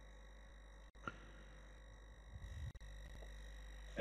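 Near silence with a faint, steady electrical hum made of several constant tones, and one small click about a second in.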